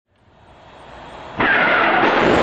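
Rocket launch roar that fades in, swelling steadily, then jumps abruptly to full loudness about one and a half seconds in.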